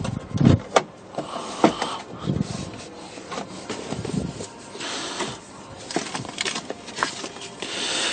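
Handling of a car's service logbook in its plastic document wallet: plastic and paper rustling as it is pulled out and opened, with a few soft knocks and sharp clicks along the way.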